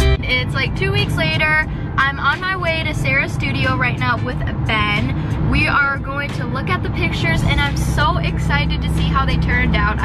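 A young woman talking inside a car, over the car cabin's steady low rumble.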